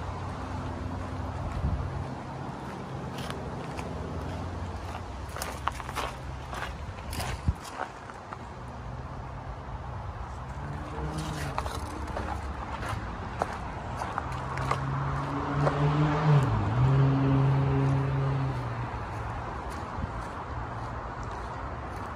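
Steady freeway traffic noise, with scattered footsteps and small knocks from walking across a yard. A vehicle's engine hum swells and is loudest about two-thirds of the way through, its pitch dipping briefly.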